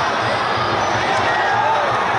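Football stadium crowd: many voices shouting and chanting together, with repeated low thumps underneath.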